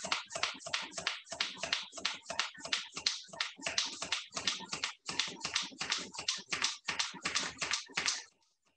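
Small hand vacuum pump being worked on the air valve of a zip-top sous vide bag, quick even strokes several a second, each a short hiss of air drawn out of the bag.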